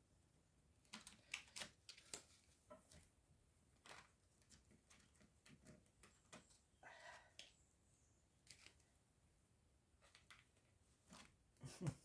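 Faint, scattered flicks and taps of a deck of tarot cards being shuffled and handled, with a few louder clicks near the end.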